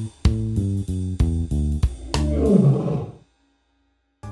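A short phrase of plucked-guitar backing music, then about two seconds in a lion's roar sound effect lasting about a second and falling in pitch.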